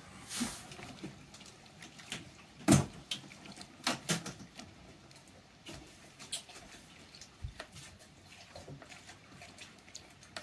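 Scattered clicks and knocks of hardware being handled by hand at a gear-shift cable fitting inside a locker. The loudest knock comes a little under three seconds in, with two more just after four seconds.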